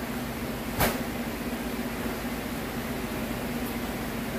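Steady mechanical room hum with one sharp thump about a second in.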